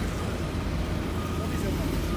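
A steady low engine rumble of vehicles or road machinery, with faint voices in the background.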